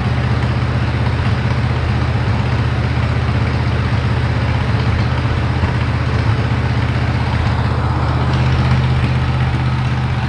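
Wisconsin VP4 air-cooled four-cylinder engine running steadily with no load while it warms up. The owner says it runs pretty smooth but still misses once in a while, for no reason he knows.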